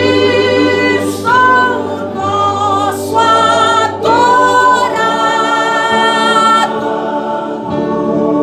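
Gospel song: voices sing long, held notes with vibrato, the pitch stepping to a new note every second or so, over a steady low accompaniment.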